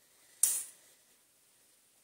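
A single short, sharp click with a hiss about half a second in, then quiet room tone.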